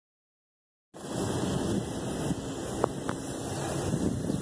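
Silence, then about a second in, wind rumbling on the microphone starts up outdoors, steady throughout, with two brief clicks near the end.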